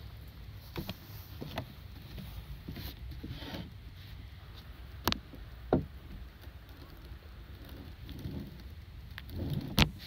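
A balance board rocking under a person's feet: a low rolling rumble broken by scattered wooden knocks. The sharpest knock comes about five seconds in and the loudest just before the end.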